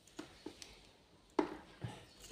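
Four light clicks and taps from a spring terminal clip and wires being handled, the sharpest about one and a half seconds in.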